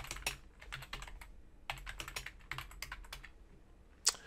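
Computer keyboard being typed on: irregular runs of key clicks as a short line of text is entered, with brief pauses between bursts of keystrokes.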